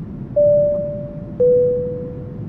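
Two electronic keyboard notes, the second a step lower, each struck and slowly fading, over a steady low rush of noise as the music intro begins.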